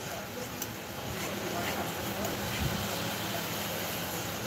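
A steady low hum of room noise, with faint talk in the background.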